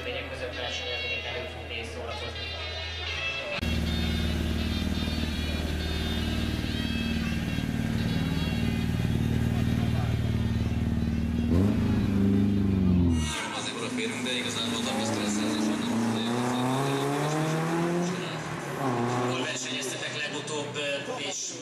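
BMW 3 Series (E36) rally car engine running at a steady, loud idle, with a short rise in revs near the middle, then revving up and down as the car drives off.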